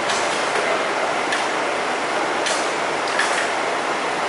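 Steady rushing noise of a parked tour coach with its engine running, broken by a few sharp clicks and knocks as people step down its door steps.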